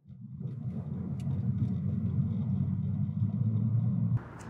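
Car driving, heard from inside the cabin: a steady low engine and road rumble that fades in at the start and cuts off at the end.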